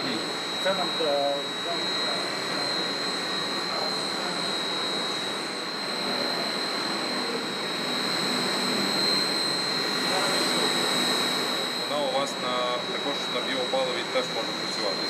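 Steady machinery noise of a gas-fired boiler house: a constant roar with a high-pitched whine running over it. Indistinct voices come through briefly about a second in and again near the end.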